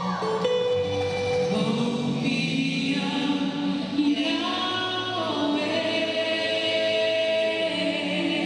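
Dance music with a choir of voices singing long, held notes that slide between pitches.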